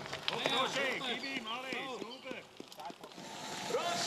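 Voices calling out in quick, short, repeated shouts. They die away about halfway through and pick up again near the end.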